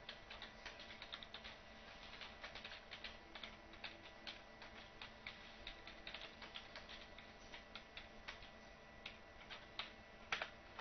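Faint typing on a computer keyboard: irregular key clicks, several a second, over a low steady hum.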